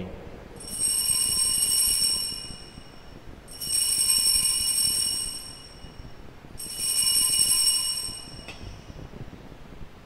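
Altar bells (sanctus bells) rung in three separate peals of about two seconds each, with a bright, high ringing. They mark the elevation of the chalice at the consecration.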